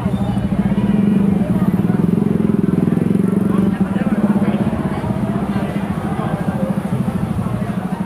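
A small engine runs steadily close by with a low, even hum; part of it drops out about four seconds in. Voices can be heard over it.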